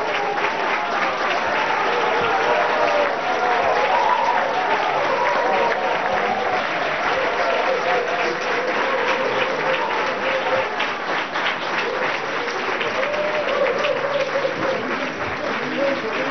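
Audience applauding steadily, with voices heard over the clapping.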